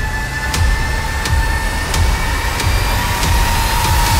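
Horror film soundtrack: a steady high drone over a heavy low rumble, with sharp ticks about three times every two seconds.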